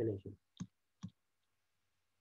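Two short computer-mouse clicks about half a second apart.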